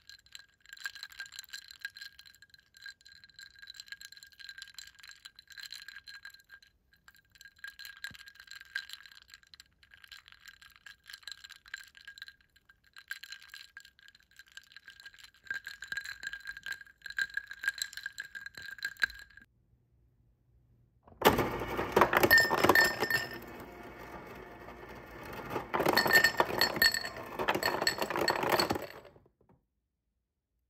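Ice cubes clinking gently against the sides of a hand-held glass of drink, in small clusters with the glass ringing after each. After a short pause, a refrigerator door ice dispenser drops ice cubes into a glass in two loud bursts, the cubes clattering against the glass and each other.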